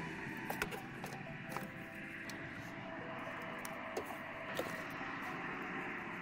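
Faint handling sounds as the rubber firewall grommet is worked loose by hand: a few soft clicks and rubbing over a steady low hiss.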